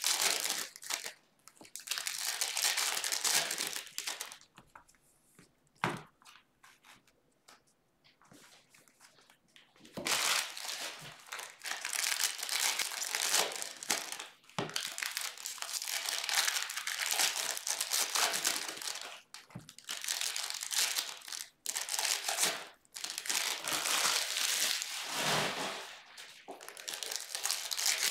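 Foil trading-card pack wrappers crinkling and being torn open as the packs are handled, in repeated bursts, with a lull of a few seconds in the first half.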